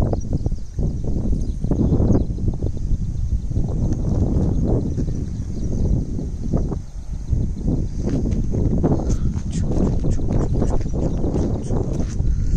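Wind buffeting the microphone in uneven gusts, as a low rumble that swells and drops every second or two. A faint steady high-pitched hiss sits above it.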